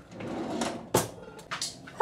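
A kitchen drawer sliding, then shutting with a sharp knock about a second in, followed by a few light clicks.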